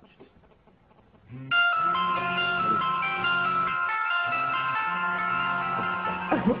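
Several mobile phones ringing at once with overlapping melodic ringtones. The ringing starts suddenly about a second and a half in, after near silence, and holds steady.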